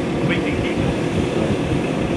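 Steady low rumble of outdoor background noise, with a few faint spoken sounds about half a second in.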